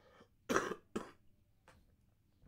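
A person coughing twice in quick succession, the first cough longer and louder than the second.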